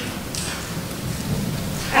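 Steady hiss of room noise in a pause between words, even and without distinct events.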